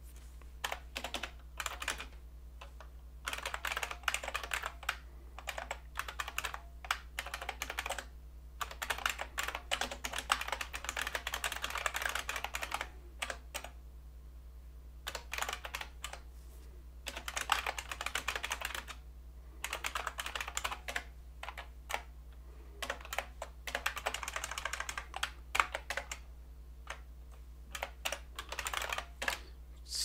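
Typing on a computer keyboard: bursts of rapid keystrokes broken by pauses of a second or two, over a faint steady low hum.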